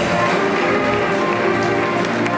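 A school jazz band playing live, led by the saxophone section with brass, over a drum kit, piano, bass and guitar: sustained horn chords with steady drum and cymbal strokes.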